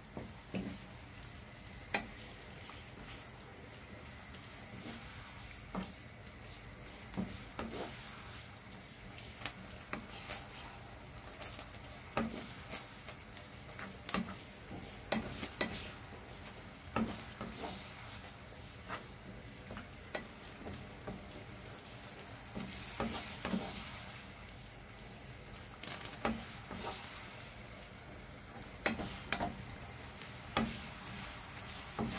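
Wooden spatula stirring chilli con carne in a frying pan, with irregular scrapes and knocks against the pan over the steady sizzle of the simmering mince-and-tomato sauce.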